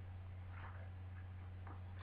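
Quiet room tone with a steady low hum, and two faint soft ticks about a second apart.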